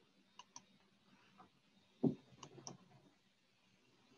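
Faint scattered clicks, with one louder knock about halfway through followed by a few more clicks.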